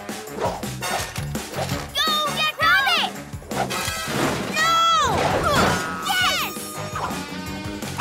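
Cartoon action score with swooping sound effects that fall in pitch, twice, and a crash.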